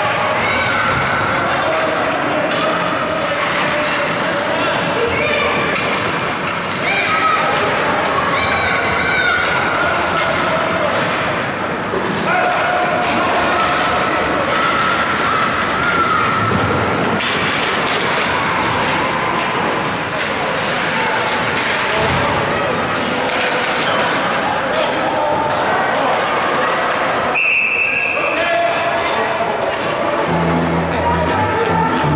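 Ice rink game noise during live hockey play: spectators and players shouting and calling out over one another, with knocks and thuds of the puck, sticks and bodies against the boards. Near the end comes a short high whistle blast, a referee's whistle stopping play.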